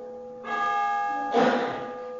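A church bell ringing, struck twice about a second apart, each stroke ringing on in several steady tones.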